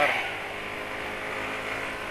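Yamaha motor scooter's engine running steadily while riding slowly in traffic, heard as a low, even drone under road noise.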